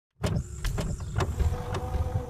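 Sound effect for an animated logo: a quick series of mechanical clicks over a low whirring rumble as the blocks shift, with a steady tone joining about halfway through.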